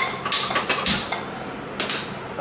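A gas hob burner being lit, with a string of sharp clicks, several in the first second and another pair near the end, as the wok is settled on the metal pan support.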